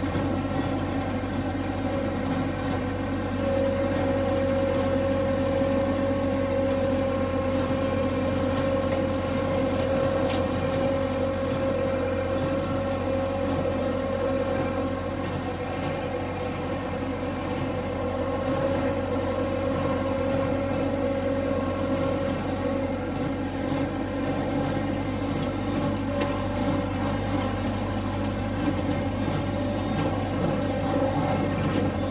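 Massey Ferguson 383 diesel tractor engine running steadily at working speed while pulling a rotary cutter through pasture, a constant hum that holds one pitch throughout.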